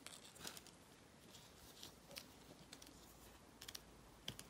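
Near silence, with a few faint ticks and rustles from fingers smoothing air-drying clay inside a plastic calyx cutter, a small cluster of ticks coming near the end.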